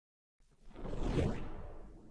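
A whoosh sound effect for an intro transition, swelling up about half a second in and fading away.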